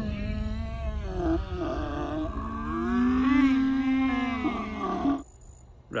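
Men's voices yelling in one long, drawn-out strained shout that wavers in pitch, over a low rumble, cutting off abruptly about five seconds in.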